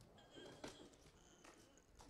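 Near silence: faint room tone with a few soft, distant knocks.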